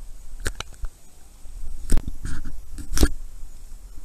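Sharp knocks and clicks on the open canoe that carries the camera, about seven in four seconds, the loudest about two and three seconds in, over a low steady rumble.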